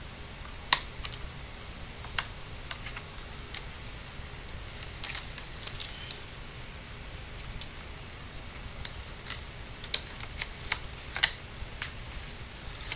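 Plastic clicks and taps from a netbook keyboard as it is pried up with a credit card to release its retaining clips, keys clicking under the pressing hands. One sharp click comes about a second in, scattered fainter ones follow, and a quicker run of clicks comes near the end.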